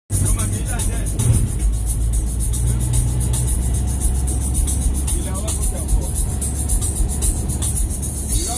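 Steady low rumble of a minibus driving, heard from inside the passenger cabin, with faint voices in the background.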